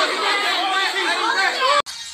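Crowd chatter: several voices talking over one another, with little low end, cut off abruptly near the end.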